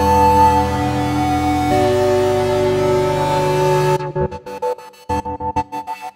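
Synthesizer playing long, sustained chords that change once, then, about two-thirds of the way in, chopped into a rapid rhythmic stutter of short on-off pulses by a sequenced gate effect.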